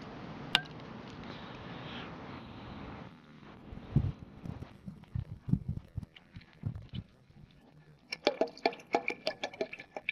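Used motor oil poured from a plastic bottle into a saucepan of melted lard: a steady pouring trickle for about the first three seconds, then scattered low knocks and clicks from the plastic bottle and pouring, with a burst of clicks near the end.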